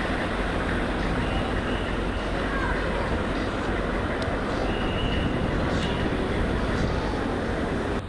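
Military truck's diesel engine running steadily with a low, even rumble.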